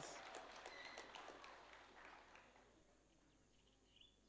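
Near silence: faint background noise with a few soft clicks, fading out over the first two to three seconds.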